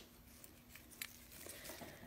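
Near silence with faint handling sounds of supplies being moved on a craft table, including one light click about a second in.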